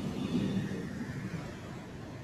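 The soundtrack of a promotional video clip played back into the room, a low noisy sound slowly fading out as the clip ends.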